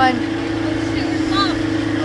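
Boat motor running steadily while the boat is under way, a constant even hum.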